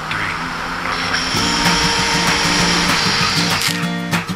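Music playing over the high whir of a jet ski's engine and the hiss of its spray.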